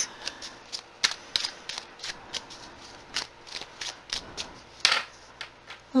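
A deck of tarot cards being shuffled by hand: a run of irregular soft clicks and flicks, with a longer swish of cards near the end.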